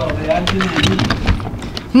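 Handling noise as the camera is set down against a cotton hoodie: rapid rustling and small knocks of fabric rubbing over the microphone, with muffled speech underneath.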